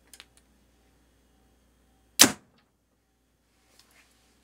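A single paper-tuning test shot from a compound bow: one sharp, loud snap of the string about two seconds in as the arrow is loosed through the paper. It is preceded by a few faint clicks.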